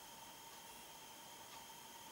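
Near silence: a faint steady hiss of room tone with a faint high-pitched whine.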